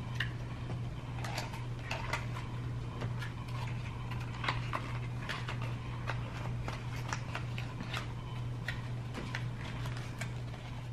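Cardboard and plastic-wrap packaging being handled, with many small irregular clicks and crinkles, over a steady low hum.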